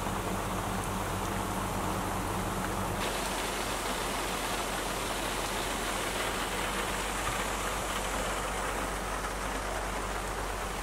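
Rain pouring on a small fiberglass camper trailer, heard from inside as a steady hiss. The sound changes abruptly about three seconds in, when a low hum under the rain stops.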